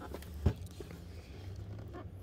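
Hands turning over a shrink-wrapped metal card tin: faint handling rustle with one short knock about half a second in.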